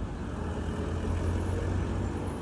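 City road traffic: a steady low rumble of vehicles.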